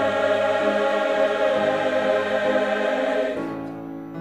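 A large mixed choir singing a loud, sustained chord with piano accompaniment. The choir releases about three seconds in, leaving the piano playing on alone.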